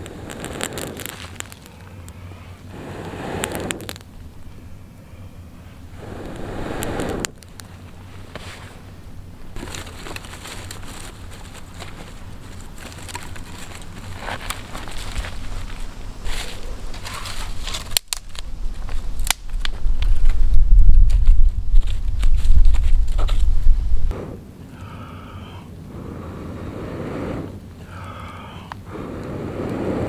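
Small campfire crackling over embers, with sticks rustling and snapping as kindling is fed on, and several long breaths blown onto the coals to bring up a flame. Wind buffets the microphone for several seconds in the middle, the loudest part.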